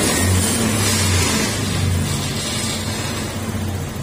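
Honda Beat FI scooter's small single-cylinder fuel-injected engine running steadily at a high idle, swelling slightly a few times. It runs smoothly without stalling now that a new throttle position sensor is fitted.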